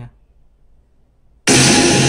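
A song with guitar starts suddenly and loudly about one and a half seconds in, played through a pair of Tronsmart Element Groove Bluetooth speakers linked in stereo.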